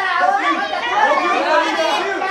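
Several people's voices talking and calling over one another in a large hall: chatter.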